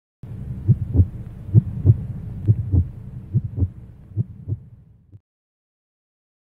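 Heartbeat sound effect: paired low 'lub-dub' thumps about once a second, fading away and cutting off about five seconds in.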